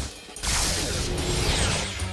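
Cartoon sound effect: a dense, noisy whoosh that sweeps down in pitch for about a second and a half, starting about half a second in, over background music.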